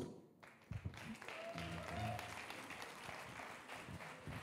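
A small audience applauding, starting about half a second in and holding steady.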